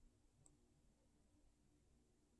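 Near silence: room tone with a faint low hum, and one faint click about half a second in.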